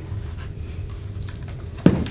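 Steady low background hum in a small room, with faint handling noise and one sharp knock near the end, as of an object being handled or set down.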